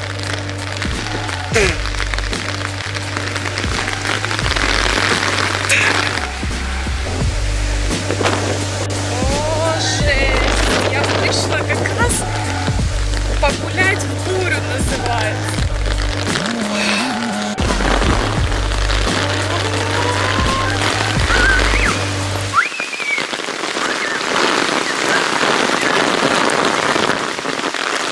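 Heavy rain falling steadily, with background music playing over it; the music's bass line drops out abruptly about three-quarters of the way through.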